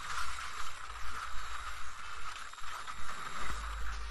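Action sound effects from an animated episode's soundtrack: a steady rushing noise with many small irregular peaks and a low rumble that grows louder near the end.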